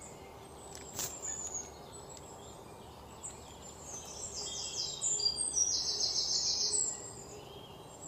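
Birds chirping in high notes, building to a fast trill of repeated high notes in the second half. A single sharp click about a second in.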